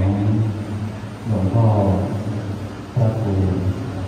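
A man speaking Thai in short phrases with a deep voice, naming a monk ("Luang Pho…").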